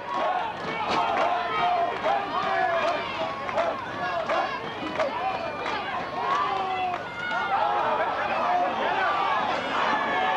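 Football crowd of many voices shouting and cheering at once, a steady overlapping din with no single voice standing out.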